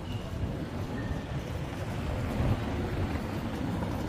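Wind buffeting the microphone outdoors: an uneven low rumble that grows slightly louder.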